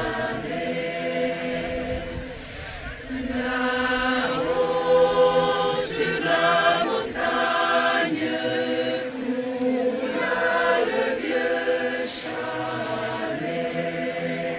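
Choir singing in several parts, in sustained phrases that swell and ease off every few seconds.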